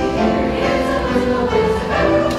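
Youth choir of middle-school singers singing together, holding sung notes that move from pitch to pitch.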